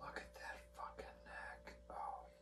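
A man whispering quietly under his breath in short broken snatches, over a steady low hum.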